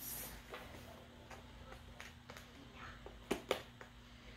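Faint handling of a cardboard product box on a table: soft rubbing and a few light taps, with two sharper taps close together near the end, over a faint steady hum.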